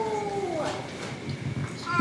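A baby's voice: one drawn-out high-pitched call that slides down in pitch and stops less than a second in, followed by faint room noise.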